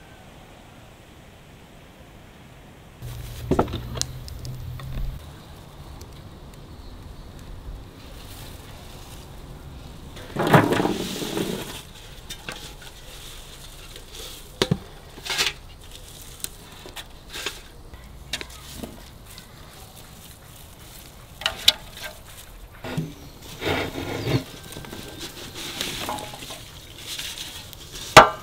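Large aluminium basins being handled, with scattered knocks and clinks, the loudest about ten seconds in, and fern fronds rustling as they are lifted off a basin of raspberries.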